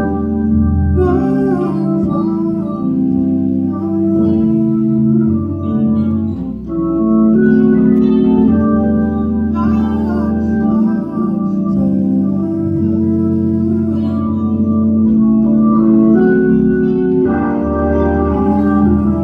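Hammond-style console organ playing sustained gospel chords over a moving bass line, the chords changing every second or two.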